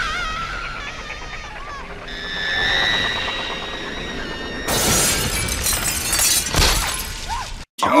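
Horror film soundtrack: a woman's pleading voice over tense music with held high tones, then, a little under five seconds in, a loud smashing crash with shattering that lasts nearly three seconds and cuts off suddenly.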